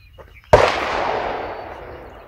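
A single shotgun shot from a break-action double-barrel shotgun, fired about half a second in. Its report trails off over a second and more.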